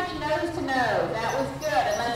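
People's voices talking in the arena, the words unclear.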